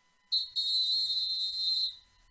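A whistle blown, high and steady: a short chirp, then a long blast lasting over a second.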